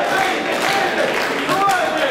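Several people talking at once in a hall: indistinct voices, with no one speaking clearly into the microphone.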